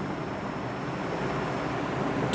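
Steady background hiss with a faint high, even whine that stops near the end.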